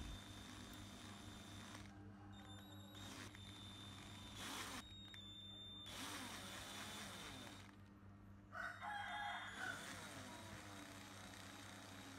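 Very quiet background with a faint steady low hum. About three-quarters of the way through comes a faint call, about a second long, with several pitches stacked together.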